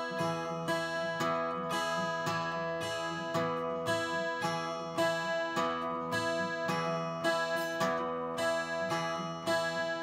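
Twelve-string Rainsong acoustic guitar fingerpicked in a steady, even rhythm, tuned to open D and capoed at the third fret. It is a non-alternating pattern: index, middle and ring fingers each striking together with a thumb stroke on the bass.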